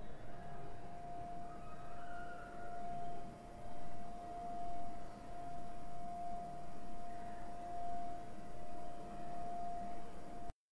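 A single steady pitched tone, held level like a drone, over faint low noise.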